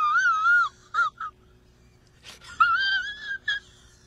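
A man's high-pitched, wavering whimpering cry, in two drawn-out stretches with a few short squeaks between.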